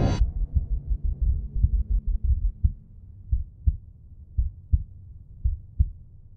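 The music cuts off abruptly, leaving a heartbeat sound effect: low thumps in lub-dub pairs that slow and space out, over a faint low drone, fading away near the end.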